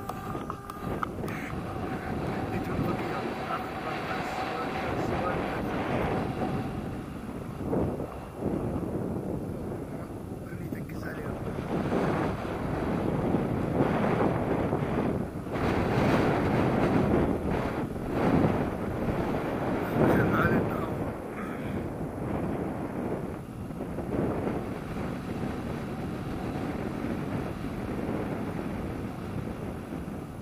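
Airflow buffeting an action camera's microphone in flight under a paraglider, a continuous rushing that swells louder for several seconds in the middle.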